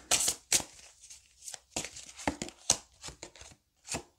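A deck of oracle cards being handled and shuffled, then a card drawn: a run of short, irregular card snaps and swishes.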